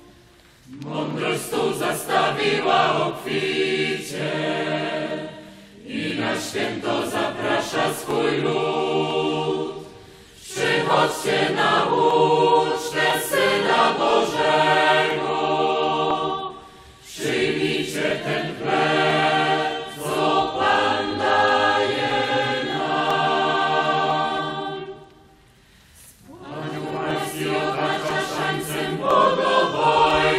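A mixed youth choir of young men and women singing together in phrases, with short breaks between lines about 5, 10, 17 and 25 seconds in.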